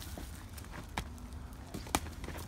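Boxing sparring: two sharp thumps, one about halfway through and a louder one near the end, over low background noise.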